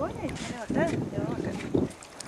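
A child's high-pitched voice making short, rising-and-falling exclamations over wind noise on the microphone.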